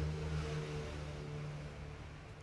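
An engine running steadily, a low hum that weakens near the end.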